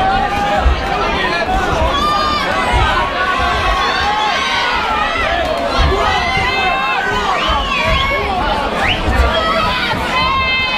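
Boxing crowd shouting and calling out, many voices overlapping at once, with a few dull low thumps scattered through.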